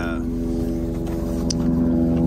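Helicopter flying overhead, a steady hum of several held tones.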